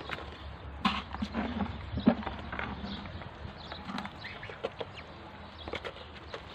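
Muscovy ducklings feeding from a plastic dish: their bills knock and click on the dish irregularly, the loudest knock about two seconds in, with a few short high peeps among them.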